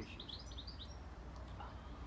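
A small songbird giving a quick run of high chirps in the first second, faint against a steady low rumble.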